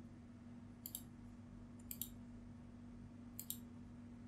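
Computer mouse button clicks: three quick press-and-release pairs about a second apart, over a faint steady hum.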